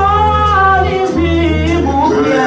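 Live gospel worship music: a voice singing long held notes through a microphone over steady bass notes from the keyboard and band, in two phrases with a short break about a second in.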